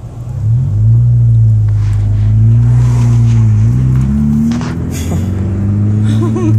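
Car engine heard from inside the cabin as the car pulls away, its pitch rising about half a second in and stepping up again around four seconds before settling, with a few brief knocks.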